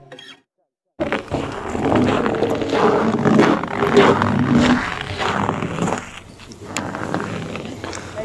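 The song ends, and after about a second of silence, raw camera-microphone sound begins: indistinct voices mixed with heavy, uneven rumbling noise. The noise dips briefly about six seconds in.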